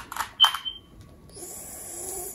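Glass marbles clicking together in a bowl as a hand picks one out: three quick clicks in the first half second, the last with a short ringing ping. A steady high hiss follows in the second half.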